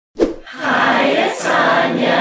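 Intro jingle: a short pop, then a group of voices singing a held a cappella chord.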